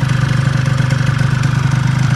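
Honda Dio scooter engine idling steadily after carburettor pilot and main jet tuning, running well by the owner's judgement.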